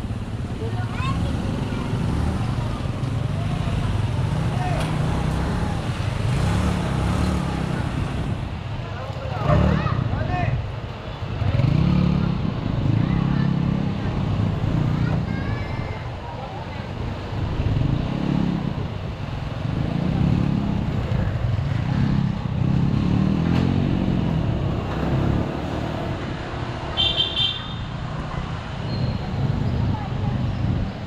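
Honda ADV 150 scooter's single-cylinder engine running through city traffic, its pitch rising and falling with the throttle over steady road and wind noise. A short horn toot sounds about three seconds before the end.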